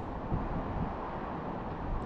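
Wind blowing across the microphone: a steady low noise.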